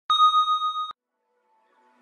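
A single loud electronic bell ding with a clear high ringing tone that wavers in loudness and cuts off abruptly just under a second in, sounding the start of a timer. Music begins fading in faintly near the end.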